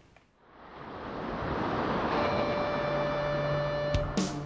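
Rush of ocean surf fading in over the first second and holding steady, with a chord of held musical tones entering a little after halfway and a low note joining near the end.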